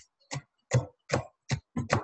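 A chef's knife chopping kale and collard stalks on a cutting board: a steady run of about six sharp chops, a little under three a second.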